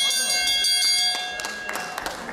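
Ring bell struck once, a bright metallic ringing that fades away over about two seconds: the bell ending the final round of the kickboxing bout.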